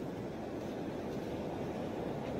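Steady rushing noise of wind and ocean surf, with no distinct events.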